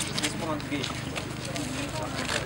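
A man speaking Polish over a steady low hum, with scattered light clicks.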